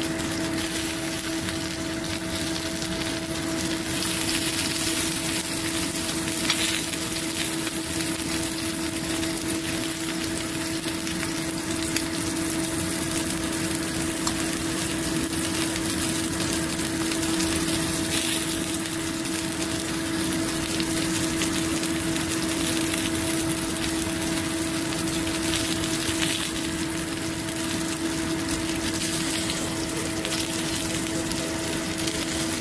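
Beef and bell-pepper kebabs sizzling steadily on a ridged grill pan, under a constant hum.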